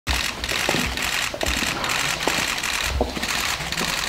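Many press cameras' shutters clicking rapidly and continuously, overlapping one another, with a few dull low thuds underneath.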